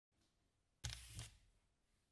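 Near silence, broken about a second in by a brief soft rustling scrape of handling as a ceramic mug is picked up.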